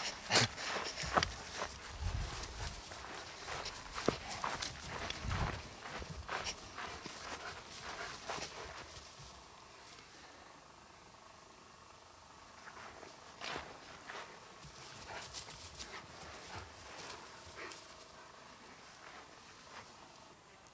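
A large puppy playing with a rope-and-ball toy on grass: paw steps, scuffling and the toy being mouthed and chewed. A dense run of clicks and knocks fills the first half, then it goes quieter with only scattered ticks.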